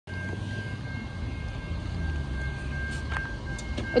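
Low, steady rumble of a distant approaching train, with a thin steady high-pitched tone over it and a few faint clicks near the end.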